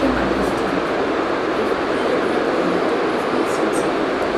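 Steady, loud background noise with no clear rhythm or tone, and faint voices under it.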